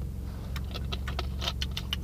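Drinking soda from a plastic bottle: a run of small clicks from gulping and the bottle, starting about half a second in, over a steady low hum in the car cabin.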